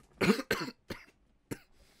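A man coughing in a short fit of four coughs, the first two the loudest and the last two weaker and spaced further apart.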